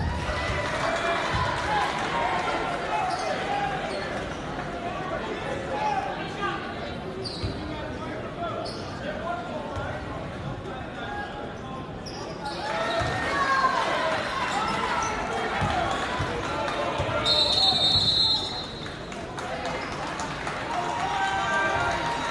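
Basketball bouncing on a hardwood gym floor during play, over a crowd of voices in a large gymnasium. The crowd grows louder about two-thirds of the way through, and a short shrill high tone sounds for about a second near the end.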